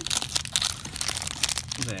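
Plastic overwrap of a trading-card value pack crinkling as it is handled, a rapid irregular run of crackles.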